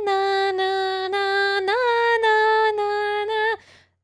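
A woman singing one long held note on a steady pitch, with a brief rise and fall about halfway through. The note stops shortly before the end.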